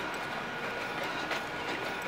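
Steady outdoor city background noise: an even, continuous rush with a faint steady high tone running through it.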